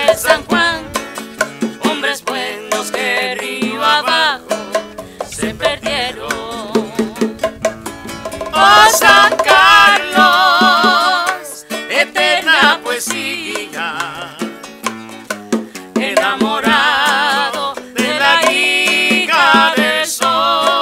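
A man and a woman singing a duet with wide vibrato, accompanied by a strummed acoustic guitar. The voices swell loudest about eight seconds in and again near the end.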